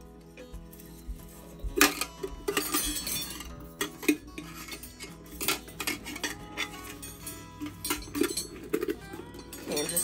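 Old metal spoons and forks hanging on fishing line from a wind chime clink and jangle against one another as the chime is handled. The clinks come thick and irregular from about two seconds in.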